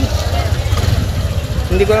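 Motorcycle engine running at low speed with wind on the rider's microphone, a steady low rumble as the bike rolls slowly along.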